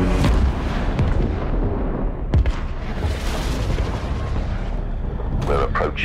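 Battle sound effects from a war film's soundtrack: a continuous booming rumble and crackle of explosions and gunfire, with one sharp crack about two and a half seconds in. A radio voice starts near the end.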